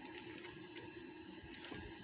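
Quiet background: a faint steady hiss with a thin high tone and no distinct sound.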